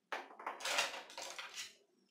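Handling noise on a tabletop: a roll of masking tape set down and paintbrushes picked up. It starts suddenly and runs on as an irregular clatter and rustle for about a second and a half.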